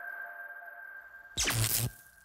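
Electronic logo sting: a single high tone held and slowly fading, then a short falling whoosh about a second and a half in that stops just before the end.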